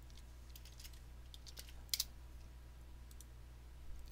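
Faint computer keyboard keystrokes and clicks, a few scattered taps with the sharpest about two seconds in, over a low steady hum.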